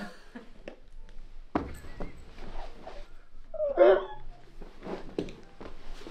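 Hushed room with scattered small knocks and rustles from people shifting about and handling the camera, with a thump about one and a half seconds in; a voice says 'my god' in between.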